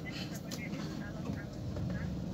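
Steady low rumble of a car's engine and road noise heard from inside the cabin, with faint scraps of voice.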